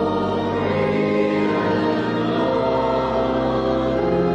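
Church choir singing in several parts, holding long chords, with the chord changing near the end.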